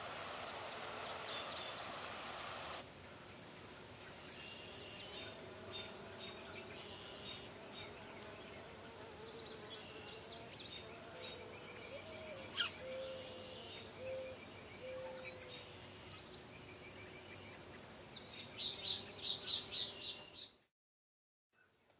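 Crickets trilling in one steady, high-pitched drone. A soft rush underneath stops about three seconds in. A few short, low calls come in the middle and a quick run of sharp chirps near the end.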